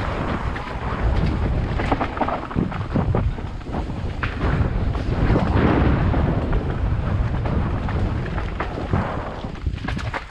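Dirt bike ridden along a rough forest trail, heard through a body-mounted camera: a steady rumble of engine and wind buffeting, broken by scattered knocks and rattles from bumps in the ground.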